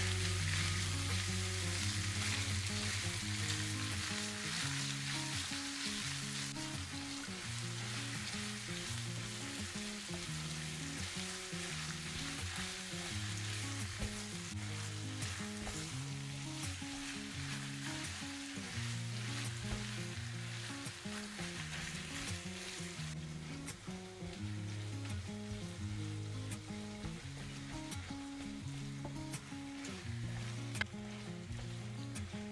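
Minced meat sizzling as it fries in a nonstick pan, with a spatula scraping and turning it. The sizzle eases slightly about three-quarters of the way through. Background music with a stepping melody plays underneath throughout.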